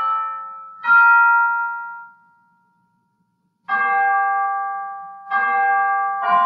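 Piano playing slow chords, each struck and left to die away. Midway the sound cuts out completely for about a second before the chords resume.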